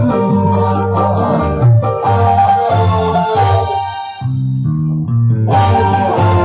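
A live dangdut band plays an instrumental passage, with guitar and keyboard over a walking bass line. Past the middle the band thins out to mostly bass for a moment, then the full sound comes back near the end.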